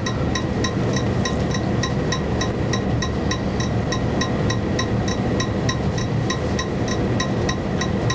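Steady hiss and low hum of a noisy video recording of a quiet room, with a faint, evenly spaced ticking about four times a second.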